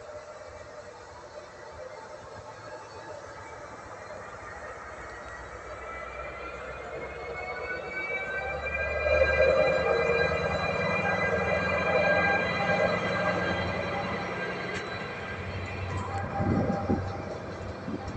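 ÖBB Class 2016 diesel-electric locomotive pulling away with a freight train of loaded stake wagons. Its engine and high whining tones swell as it passes close by and are loudest about halfway through, then the wagons roll by with a few knocks near the end.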